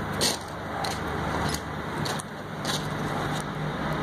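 A steady low engine hum under a rushing noise, with a few footsteps about a second apart.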